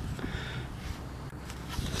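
Low, steady background noise with faint rustling and no distinct event.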